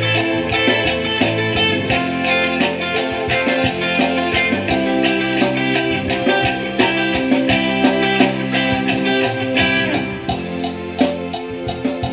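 Electric guitar playing offbeat funk chords along with a recorded backing track that has a bass line and percussion.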